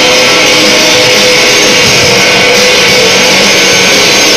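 A rock band playing live: electric guitars and bass over drums, a dense heavy rock sound that stays very loud with no let-up.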